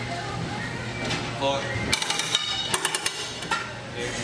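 A quick run of about half a dozen sharp metallic clinks with a ringing tone, typical of a gym machine's steel weight-stack plates knocking together as the stack is let down. A short spoken word comes just before them.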